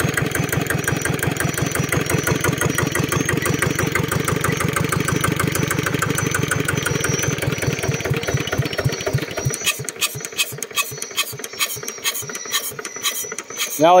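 Kubota ER65-1 single-cylinder stationary engine running steadily at slow revs with an even beat. About nine seconds in it is shut off, and its beats slow, spread apart and die away over the next few seconds as the flywheel coasts to a stop.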